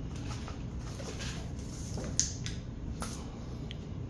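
A steady low hum, with a few faint ticks about two and three seconds in.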